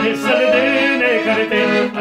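Piano accordion playing a folk tune, with a man singing along in a held, wavering voice.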